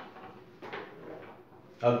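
A few short scraping strokes of a marker on a whiteboard: a sharp one at the start and a softer one under a second in. A man starts speaking near the end.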